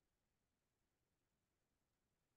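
Near silence: the audio line is essentially dead, with no sound above the noise floor.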